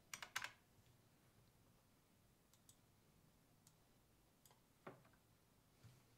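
Faint clicking of a computer mouse and keys, a quick cluster of several clicks right at the start and then a few scattered single clicks, over near-silent room tone.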